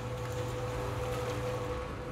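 Portable cement mixer running: a steady low hum with a thin, steady whine above it.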